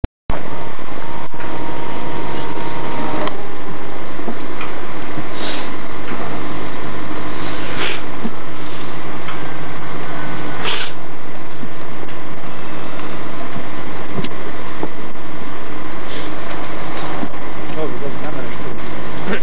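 Indistinct voices buried under a loud, steady hum and hiss from an old video recording's sound track, with a few short bursts of noise.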